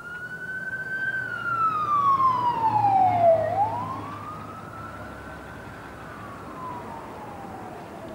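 An emergency vehicle siren wailing, its pitch rising and falling slowly about twice, loudest near the middle and fading toward the end.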